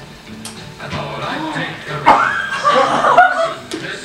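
Family members chuckling and laughing, the laughter getting louder about two seconds in.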